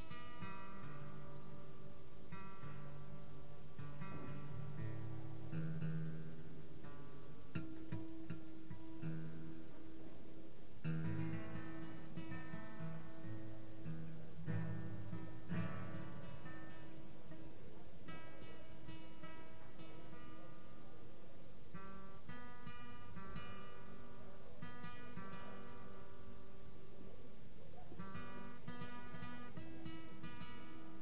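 Solo acoustic guitar being picked and strummed, chords and single notes ringing with no singing.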